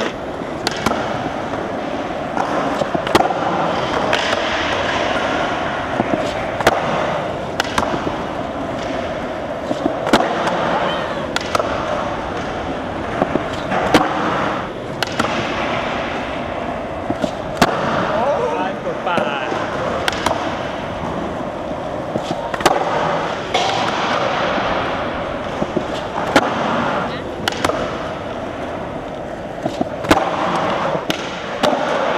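Skateboard wheels rolling on a smooth concrete floor, broken by repeated sharp pops and board-landing slaps as the skater does nose manual nollie flips over and over.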